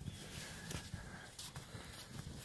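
Faint, irregular crunching and scuffing of packed snow as a child crawls through a snow tunnel, a few soft knocks spread across the two seconds.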